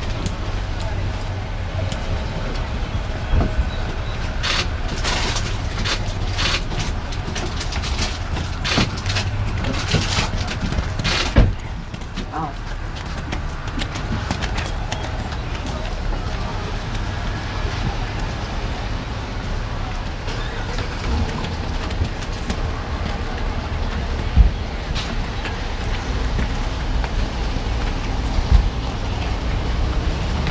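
Steady low rumble of wind on the microphone, with indistinct voices in the background and a few sharp clicks.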